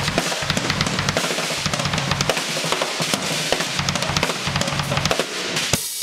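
Drum kit played in a fast, busy solo, strokes packed densely together, with a brief break just before the end.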